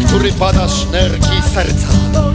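Live church worship band playing drums, acoustic guitar and electric guitar, with a man's voice through a microphone over the music.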